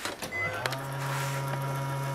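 A steady low electrical hum with faint higher overtones starts about half a second in, after a few light handling clicks.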